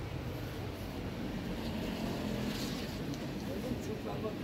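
Steady low engine hum, as of a motor vehicle running, with faint voices in the background.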